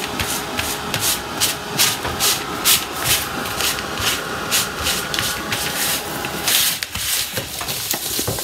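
Gloved hand rubbing and scrubbing a top-coat-stiffened cotton grain-sack fabric on a tabletop, working liquid patina into it. The strokes are scratchy and come at about three a second, with a longer, louder rub about six and a half seconds in before it eases off.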